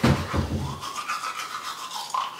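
Bristles of an old toothbrush rubbing over hair as edge control is brushed along the hairline, with a bump at the very start.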